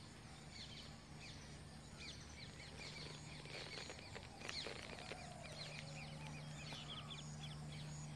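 Faint birds chirping and twittering, with many quick short calls, busiest in the middle, over a low steady hum.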